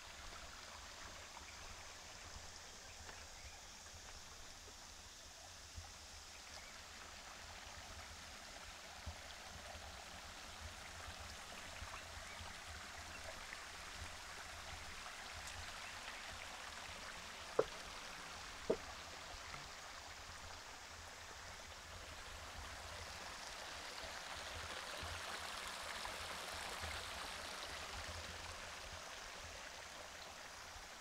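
Small shallow forest creek flowing steadily, a little louder near the end. Two sharp clicks about a second apart, just past the middle, are the loudest sounds.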